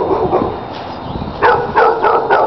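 A dog barking, a few short barks in quick succession in the second half.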